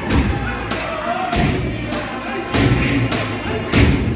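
Heavy, uneven thuds with voices singing beneath them, the percussion and song of a Torres Strait Islander dance performance.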